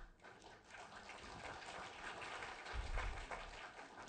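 Light audience applause that swells and fades over about three seconds as the poem ends, heard at a distance, with a brief low thump about three seconds in.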